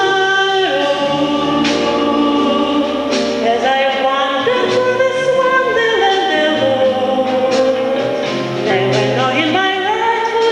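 A woman singing live into a microphone with ensemble accompaniment, holding long sustained notes.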